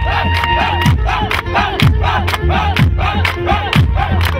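Loud Palestinian party music with a steady pounding beat about twice a second, over a crowd clapping and shouting along.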